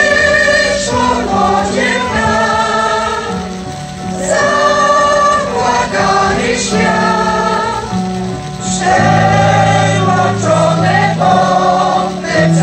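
Amateur senior choir, mostly women's voices, singing a Polish soldiers' song to electronic keyboard accompaniment. The song moves in sung phrases with short breaks between them, and a louder phrase begins about nine seconds in.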